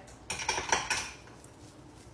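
A metal spoon clinking against dishes, a quick run of knocks with a short metallic ring lasting under a second, as an ingredient is tipped into a stainless steel mixing bowl.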